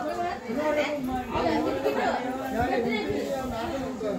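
Several people talking at once, voices overlapping in continuous chatter.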